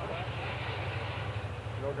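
Steady low rumble of a distant Metra diesel commuter locomotive approaching.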